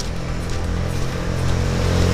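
Background music with a steady low hum, joined by the engine and tyre noise of a car approaching on the road, growing louder toward the end.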